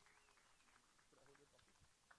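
Near silence, with only very faint traces of sound.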